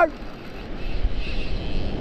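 Steady noise of surf breaking on the beach, with wind buffeting the microphone, getting a little louder about half a second in.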